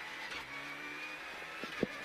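Renault Clio Rally5 rally car's engine running at steady revs, heard from inside the cabin, with a sharp knock near the end.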